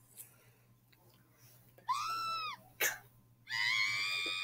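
High-pitched cartoon character screaming: a short squeal that rises and falls about two seconds in, a click, then a long held scream starting near the end.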